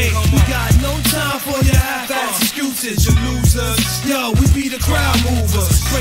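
A 1990s underground hip-hop track from a vinyl 12-inch single, playing an instrumental stretch between verses. Heavy sustained bass notes drop in and out in blocks under kick drums, with many short sliding, swooping sounds over the beat.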